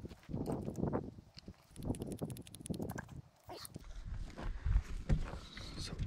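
A hand lever grease gun being worked on a grease fitting at a mini excavator's bucket pivot: irregular clicks and knocks, with a quick rattle of clicks about two seconds in.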